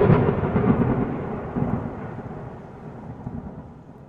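Thunder sound effect: a sudden clap, loudest at first, then a long roll that fades away steadily.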